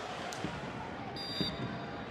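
Stadium crowd noise at a football match, a steady background hubbub with a few distant shouts. A little past a second in, a brief, faint high whistle blast, typical of a referee's whistle.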